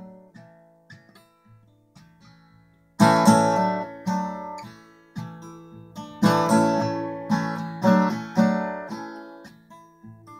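Solo acoustic guitar with no singing: a few soft picked notes for the first three seconds, then loud strummed chords that ring out in repeated strokes.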